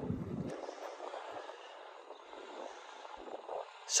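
Faint wind noise on the microphone: a low rumble in the first half second, then a soft, steady hiss.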